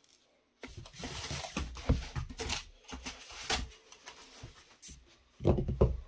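Handmade tabletop terrain pieces being picked up, slid and set down on a cutting mat: a run of rustling, scraping and sharp knocks, with the loudest knocks just before the end.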